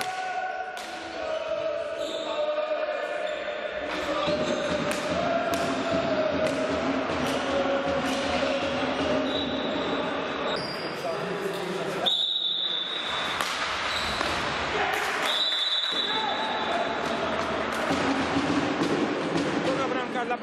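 Indoor field hockey play on a wooden sports-hall floor: repeated sharp clacks of sticks striking the ball and the ball knocking on the floor, with players' voices echoing in the hall. Past the middle come two high, steady tones of about a second each.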